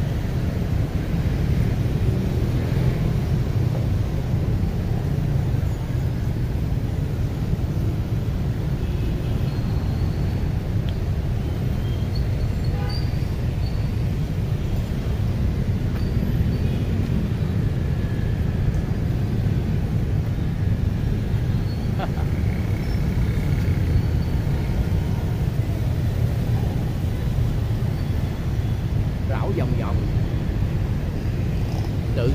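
Steady low outdoor rumble of wind buffeting the microphone, mixed with distant city traffic, holding an even level throughout.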